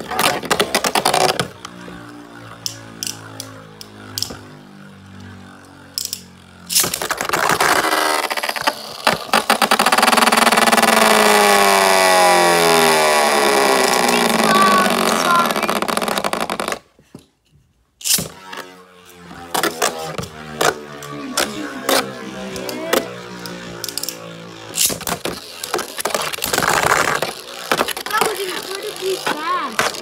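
Beyblade spinning tops whirring and clacking against each other and the walls of a plastic stadium, with many sharp clicks of hits. In the middle a loud whir falls slowly in pitch over several seconds as the tops lose speed.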